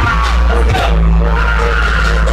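Loud live music from the stage through a club PA, with a heavy, steady bass and a held low bass note about halfway through.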